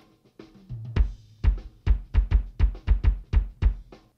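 Playback of a recorded kick drum layered with a sampled kick triggered from MIDI notes placed on its transients, the two hitting together. After a quiet first second comes a quick run of about a dozen deep kick hits, with snare and cymbals of the kit faintly behind them.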